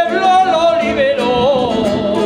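A man sings an Aragonese jota in a loud, ornamented style, holding long wavering notes with vibrato over strummed guitar accompaniment.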